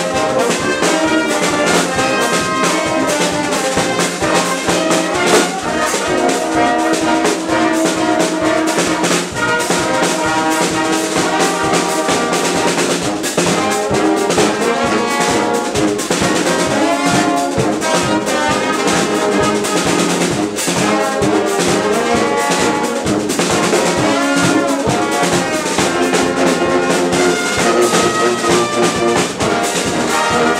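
Dweilorkest brass band playing live: trumpets, trombones, euphoniums and sousaphone over snare and bass drum, with a steady beat.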